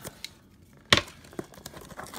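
Hands handling a shrink-wrapped cardboard trading-card box: mostly quiet faint handling, with one sharp click about a second in and a few softer ticks.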